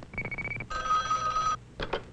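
Telephone ringing sound effect for a call being connected through the exchange: a fast trill of high pulses, then a steady ringing tone for just under a second, then a short burst near the end.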